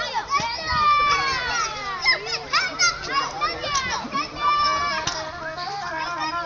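Several children shouting and calling out at once, their high voices overlapping.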